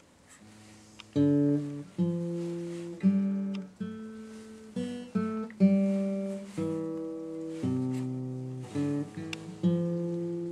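Acoustic guitar played in the background: after a brief quiet start, a slow run of chords begins about a second in, each struck roughly once a second and left to ring out.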